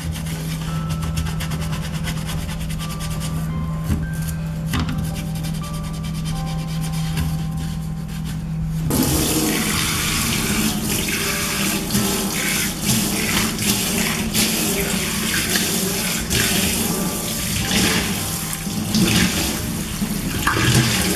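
An old toothbrush scrubbing a stainless-steel sink drain in quick strokes. About nine seconds in, the kitchen tap opens and water runs steadily into the sink, splashing over a sponge held under it.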